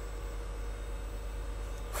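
Steady low hum with an even hiss and a faint steady tone above it: the ambient drone of machinery or ventilation in a yacht's engine room.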